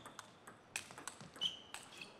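Celluloid table tennis ball being struck back and forth in a rally, heard as a few sharp, faint taps off rackets and table. One tap carries a brief high ring.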